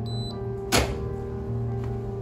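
Background music with sustained notes. Over it, a short high electronic beep from a keycard door reader at the start, then a single sharp thunk just under a second in.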